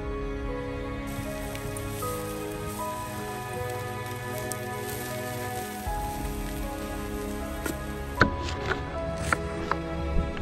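Background music over meat sizzling on a wire grill above campfire coals, a steady hiss that stops about eight seconds in. Then sharp knife strikes on a wooden cutting board follow near the end.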